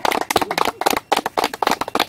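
A few people clapping their hands: quick, uneven claps.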